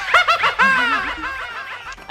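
High-pitched giggling laughter: a quick run of falling 'hee-hee' notes that fades away over about two seconds.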